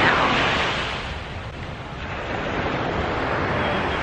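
Small sea waves breaking and washing up on a sandy beach, with wind on the microphone. The surf drops off about a second in and swells back up.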